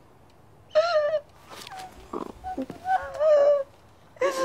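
A woman sobbing: a few high, wavering, broken cries about a second in and again near the end.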